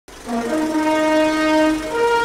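A sustained horn-like chord of several held tones, the notes shifting near the start and again at the end: the sound of an animated logo intro.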